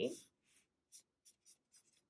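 Black felt-tip marker drawing on paper: a run of about six faint, short strokes in under two seconds.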